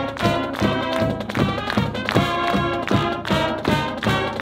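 High school marching band playing: sustained brass chords over a steady drum beat of about three strikes a second.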